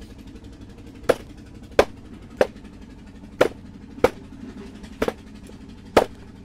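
Pumpkin shoots being snapped by hand: seven sharp snaps at irregular intervals of about a second, over a low steady hum.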